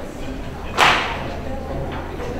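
A single sharp swish a little under a second in, over low chatter of people talking in a large room.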